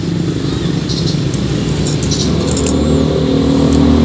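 A motor vehicle's engine running close by, a steady hum whose pitch rises slightly about halfway through, with a few light clicks above it.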